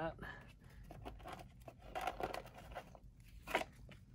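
Hands handling sleeved trading cards and plastic top loaders in a cardboard storage box: soft rustling and light plastic clicks, with a sharper click about three and a half seconds in.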